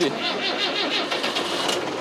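Large farm tractor's diesel engine starting up, with a rapid, even firing beat.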